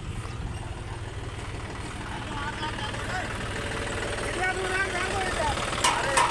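Tractor diesel engine idling steadily, with people's voices over it from about two seconds in.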